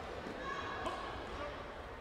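Indistinct voices echoing in a large sports hall over a steady low hall rumble, with a small sharp click about a second in.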